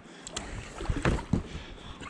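Carbon-shaft paddle working a packraft through calm lake water: blade splashes and drips, with a few short knocks about a second in.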